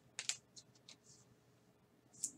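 Faint handling of a trading card and its clear plastic sleeve: a couple of light ticks and clicks just after the start, then a few fainter ones.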